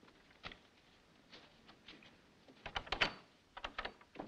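Scattered faint knocks and clicks, then a quick run of louder knocks about three seconds in and a few more just after.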